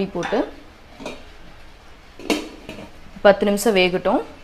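A stainless steel lid set down on a steel cooking pot: one sharp metal clank with a short ring about two seconds in, after a fainter knock, closing the pot so the sambar can simmer covered.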